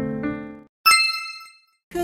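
Piano music dying away, then a single bright ding chime about a second in that rings out and fades within a second: a quiz answer-reveal sound effect.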